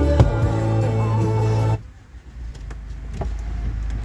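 Music playing from a car radio inside the car cabin. About two seconds in it stops abruptly, leaving a low rumble, and the music starts again right at the end.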